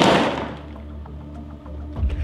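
A single sharp thud at the very start, a small box hitting the floor, tailing off over about half a second. Quiet background music runs underneath.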